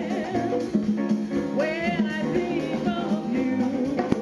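A woman singing lead with a live jazz band playing a samba, with drum kit and percussion behind her.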